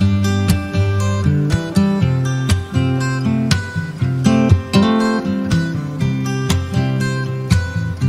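Acoustic guitar playing a song's instrumental intro: a steady run of picked notes over low ringing bass notes, with no singing yet.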